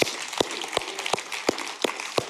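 Audience applauding, with one person's close, evenly paced hand claps about three a second standing out from the crowd.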